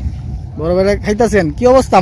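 A person speaking in short phrases over a steady low rumble.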